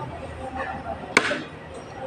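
Metal fork and spoon working at food on a plate, with one sharp clink of cutlery against the plate about a second in.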